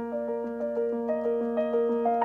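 Background piano music: a gentle melody of sustained notes that change every fraction of a second.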